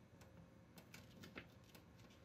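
Near silence, with a few faint clicks and rustles of paper and clear duct tape being handled.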